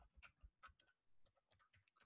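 Near silence with a few faint computer keyboard key clicks in the first second, as a short command is typed.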